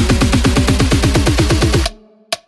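Melbourne bounce electronic dance track in a build-up: a rapid roll of kick drums, each with a falling-pitch bass thump and a short synth stab, about ten a second. The roll cuts off suddenly near the end into a break.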